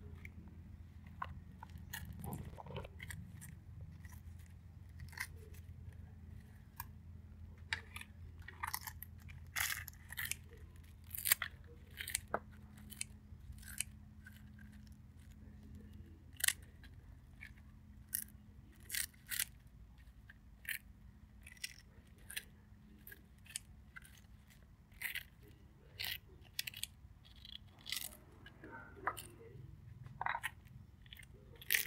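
Kitchen scissors snipping crisp deep-fried tofu skin (yuba): a long run of sharp, crunchy snips at an irregular pace, several a second at times, over a low steady hum.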